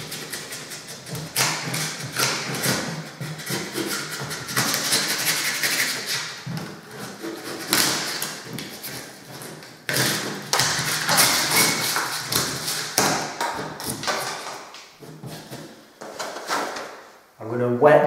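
A metal scraper cutting back hardened expanding foam in a hole in a plaster ceiling, making irregular crunchy scraping strokes and light taps.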